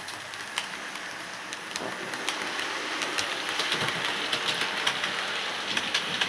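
Hornby OO-gauge model GWR Castle Class locomotive running along the layout track: a steady whirring hiss with scattered sharp clicks, growing gradually louder as it comes closer.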